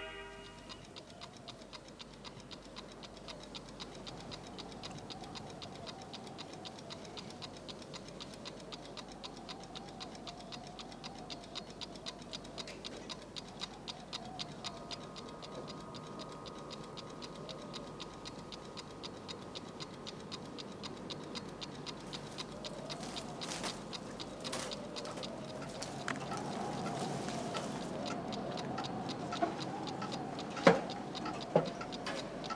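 Household clocks ticking in a quiet room, a quick, even ticking. A faint steady high tone sounds for several seconds midway, and a few louder clicks come in the last seconds.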